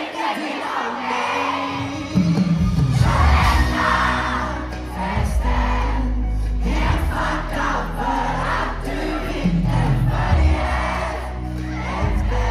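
Concert crowd singing and screaming along with a live pop band. About two seconds in, the band's bass and drums come in loudly under the crowd voices.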